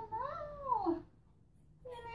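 A cat meowing: one long call that rises and then falls, then a shorter call near the end.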